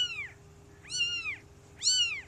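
A newborn kitten mewing three times, about once a second: high, thin calls, each rising and then falling in pitch. It is a separated kitten calling for its mother cat.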